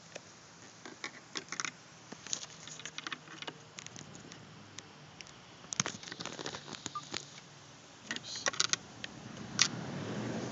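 Scattered light clicks and small knocks, in short clusters, from a screwdriver and hands working the plastic tab and arm of a Mini convertible top's track lock mechanism.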